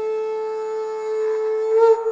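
A flute holds one long steady note over a steady background drone, with a brief louder accent near the end as the phrase moves on.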